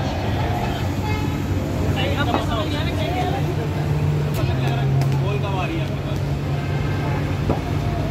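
A steady low hum under voices in the background, with a few short, sharp knocks about four and a half and five seconds in.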